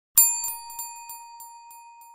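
Small bell sound effect: one bright ding about a fifth of a second in, then a few lighter strikes about every third of a second as the ringing dies down.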